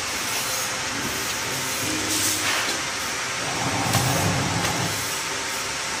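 Vertical form-fill-seal pouch packing machine running with steady mechanical noise, and a short hiss of air about two seconds in.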